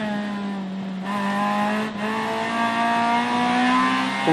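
Rally-prepared Honda Integra's engine heard from inside the cabin, pulling hard at speed with its pitch climbing. The note breaks briefly about two seconds in, then rises again.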